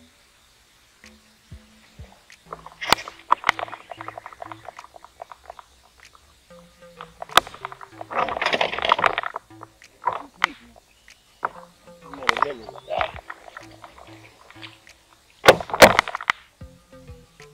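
Background music with a low, stepping bass line. Several short bursts of noise and clicks cut across it, the longest about eight seconds in.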